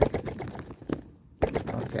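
A quick run of sharp clicks and crackles from a handheld object worked close to the microphone as an ASMR hearing-test sound. The clicks pause briefly about a second in, then start again.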